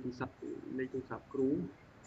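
A man speaking in short phrases, heard through a video-call connection; the voice stops about three-quarters of the way through, leaving a faint background hiss.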